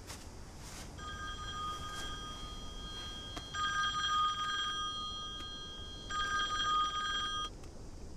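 Mobile phone ringtone playing several steady electronic tones together. It starts about a second in, swells louder twice, and cuts off near the end.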